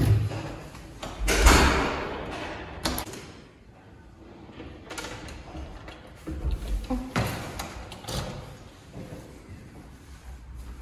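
An apartment door being unlocked with a key and opened: a loud thump about a second and a half in, then a string of sharp clicks and knocks from the lock and handle.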